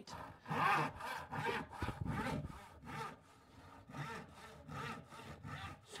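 Hand panel saw crosscutting a wooden board in quick, even strokes, about three a second. The strokes grow lighter and quieter in the second half as the cut nears its end.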